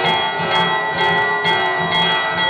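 Aarti music with bells ringing continuously over a steady beat of about three pulses a second, and short sharp high clashes scattered through it.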